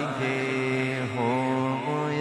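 A man singing an Urdu naat solo, with no instruments, holding long drawn-out notes whose pitch bends and shifts about a second in.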